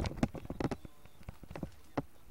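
Irregular knocks and clatter, several in quick succession in the first second, then a quieter stretch and a single sharp knock at the end.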